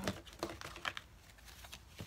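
A deck of tarot cards being picked up and handled, giving a few light, irregular clicks and taps.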